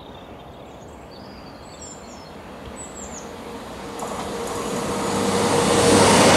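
Jet noise from the four engines of a climbing Boeing 747-400 freighter, a steady rumble that grows steadily louder. Small birds chirp faintly in the first half.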